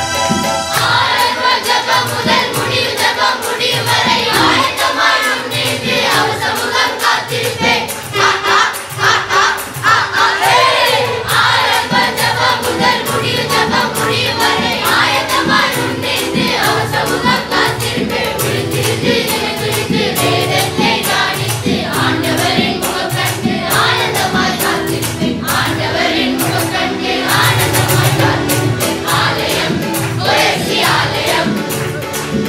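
A choir of children and young people singing a Tamil Christian song together, with electronic keyboard and percussion accompaniment in a steady beat.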